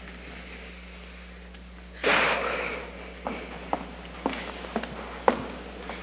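A loud breath, sniff-like, about two seconds in, followed by a handful of light footsteps on the stage floor, roughly half a second apart, in an otherwise quiet theatre.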